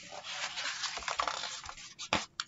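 A picture-book page being turned and handled close to the microphone: a continuous papery rustle that eases off near the end.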